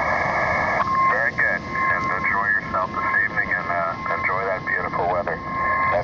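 A distant station's single-sideband voice heard through an Elecraft KX2 transceiver's speaker on the 20-metre band. The voice is narrow and tinny, with steady whistling tones under it, and it starts with about a second of receiver hiss.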